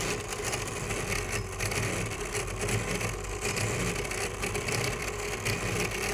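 Electromechanical flap-digit display from a totalisator board running: a steady mechanical whir with light clattering as its flaps turn over to change the digit.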